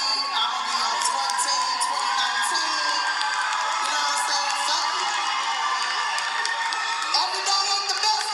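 A live comedy-show audience: many voices talking and shouting at once over music, with some cheering, in a dense, unbroken din.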